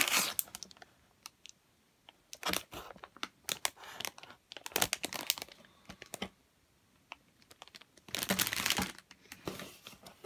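Clear plastic bags around plastic model-kit sprues crinkling as they are handled, in short crackly bursts with pauses between them; the loudest burst comes near the end.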